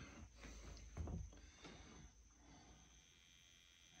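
Near silence: room tone, with a few faint, soft sounds in the first two seconds.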